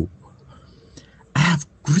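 A pause in a synthesized male voice, then one short vocal sound about one and a half seconds in, with speech starting again at the very end.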